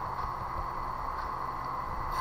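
Steady low background hiss and hum, room tone of a home recording setup, with no distinct sound event.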